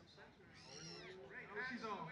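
Indistinct high-pitched women's shouts and calls from players and spectators around a rugby field, several short rising-and-falling calls in the second half, without clear words.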